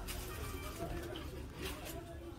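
Faint voices in the background over a low steady rumble, with a short scratchy noise near the end.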